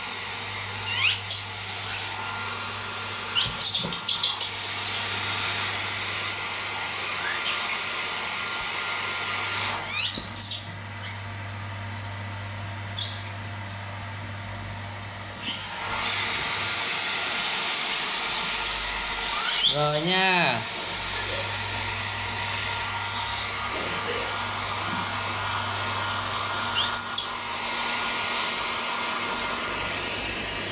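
Small hand-held hair dryer running steadily, blowing on wet baby monkeys. Short high rising squeals from a baby monkey come every few seconds, with one longer cry about two-thirds of the way in.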